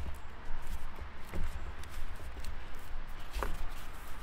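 Handling noise of a foam-covered aluminium SAM splint being bent and shaped by hand: soft rustling and scuffing with a few faint clicks, over a low rumble.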